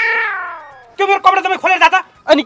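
A long drawn-out cry that rises briefly and then slides down in pitch for about a second, fading. It is followed about a second in by quick, choppy speech-like voice sounds.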